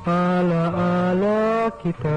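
A Tagalog love song playing, the singer holding long, steady notes that step in pitch a couple of times, with a short break near the end.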